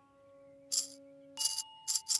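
Toy baby rattle shaken in three short bursts, the first about a second in and two more near the end, over a fading piano note and a soft held musical tone.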